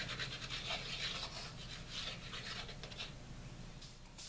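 Light, rapid scratching and rubbing of small wooden plaque pieces being handled and slid on a wooden tabletop, fading toward the end.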